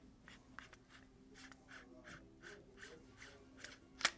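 SilencerCo Omega 36M suppressor being screwed by hand onto a Glock 19's threaded barrel through its piston mount: faint, evenly spaced metallic ticks, about three a second, with a sharper click at the end.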